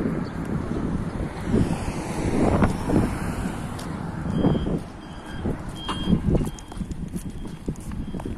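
Wind buffeting the microphone in uneven gusts while the camera moves along the street, with a few clicks of handling. From about halfway in, a series of short high beeps repeats.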